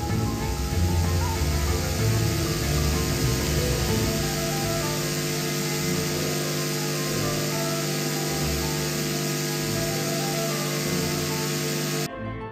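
Background music of soft, sustained held notes over a steady hiss.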